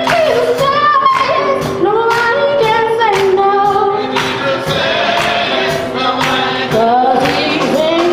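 Youth gospel choir singing with a female lead voice holding long, wavering notes, over a steady beat.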